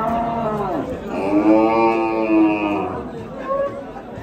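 A young bull mooing twice: a short call that rises and falls, then a longer, louder, steady moo of about two seconds.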